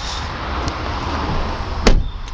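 Skoda Octavia hatchback's tailgate being pulled down and slammed shut: a rustling noise, then one sharp, heavy thud near the end.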